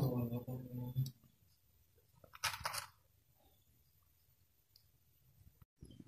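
A man's short voiced 'mm' in the first second, then a brief clicking clatter of small hard parts about two and a half seconds in; otherwise quiet.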